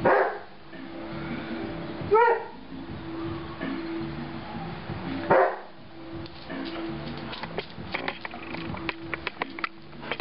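Airedale terrier barking three times, a few seconds apart, then a run of light clicks and taps near the end.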